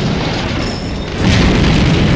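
Explosions: a rumbling blast that dies down a little, then another loud boom about a second in.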